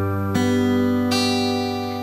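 Acoustic guitar fingerpicking a G chord one string at a time, as a slow arpeggio from the bass up. Two new notes are plucked, about a third of a second in and just after a second in, each left to ring over the notes before.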